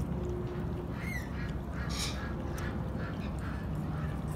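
Rainbow lorikeets giving short, faint chirps and chatter every half second or so, over a steady low background noise.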